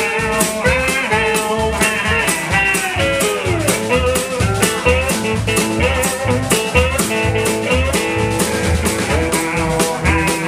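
A blues band playing live: guitar over a steady drum-kit beat and a pulsing upright double bass, with notes that bend downward about three seconds in.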